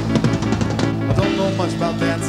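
Live rock band playing, the drum kit prominent: a quick run of drum hits in the first second, over sustained bass and keyboard notes.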